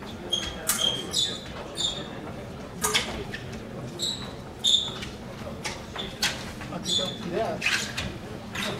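Fencers' rubber-soled shoes squeaking on the stage floor during épée footwork: a string of short, high squeaks at irregular intervals, mixed with a few sharp steps.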